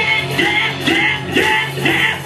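Live heavy metal band playing: distorted electric guitars and bass under a male voice singing.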